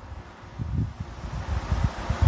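Wind buffeting a microphone: an irregular low rumble with faint hiss, growing stronger near the end.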